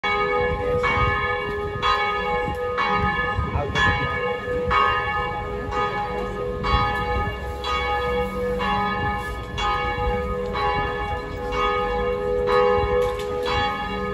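A church bell tolling steadily, one strike about every second, each ringing on into the next.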